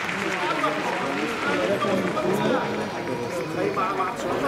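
Several people's voices talking and calling out at once, overlapping so that no single speaker stands out.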